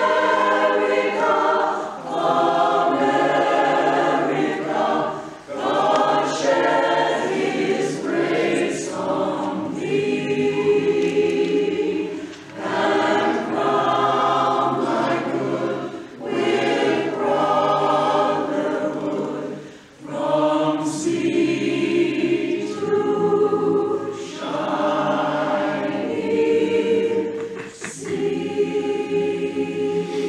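Mixed-voice community chorus singing together in sustained phrases, with brief dips for breath between phrases.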